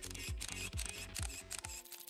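Short music sting for a title graphic: a quick thudding beat with a rapid run of sharp clicks, like camera-shutter sound effects.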